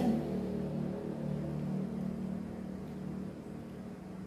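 Soft instrumental background music of sustained low notes, growing slightly quieter.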